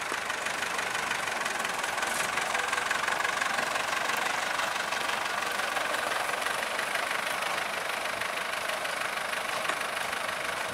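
Vintage Nuffield tractor engines running steadily at idle.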